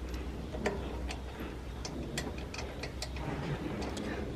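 About a dozen light, irregular metallic clicks and taps as a small steel pinion gear is worked by hand onto its shaft and meshed against a larger spur gear on a straw chopper's drive.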